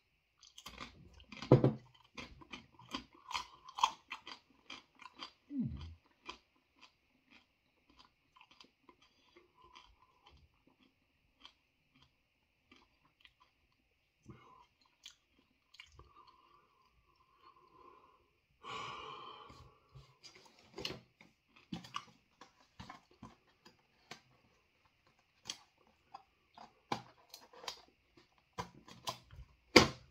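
A person biting into and chewing a crisp, thin One Chip Challenge chip, close to the microphone. A quick run of crunches comes in the first few seconds, then slower, sparser chewing with a short breathy burst about two-thirds of the way through, and more crunching near the end.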